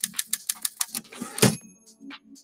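Typewriter sound effect: rapid keystrokes, about seven a second, then a heavier strike about one and a half seconds in, followed by a short bell-like ring.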